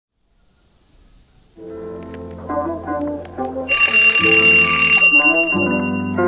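Music starts about a second and a half in with sustained chords. About two seconds later a twin-bell alarm clock rings over it for about a second and a half, then fades out.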